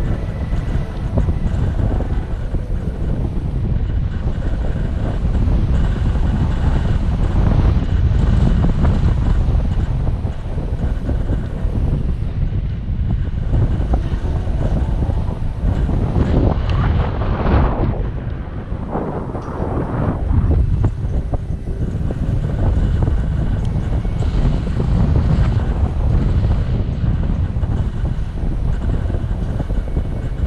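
Wind rushing and buffeting over the microphone of a paraglider in flight: a loud, steady roar strongest in the low range, swelling and easing every few seconds.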